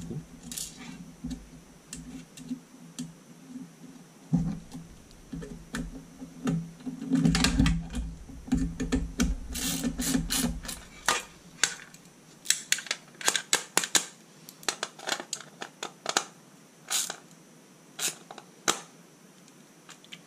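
Hand-fitting a lock nut on the rear-light bolt of a Solex moped's rear mudguard: rubbing and handling noise in the first half, then many quick, irregular light clicks and taps of small metal parts.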